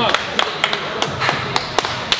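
Hands slapping and clapping: about eight sharp, irregular smacks as a lifter's back and shoulders are slapped and people clap to fire him up, with shouts of encouragement.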